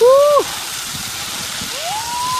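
A man whooping while riding a high-wire sky cycle: a short, loud whoop that rises and falls right at the start, then a long high whoop held steady from near the end. A steady rushing hiss runs underneath.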